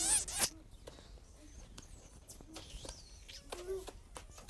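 Lips popping and smacking to imitate fizzy, bubbly fish kisses: a louder burst of pops at the start, then faint scattered little pops.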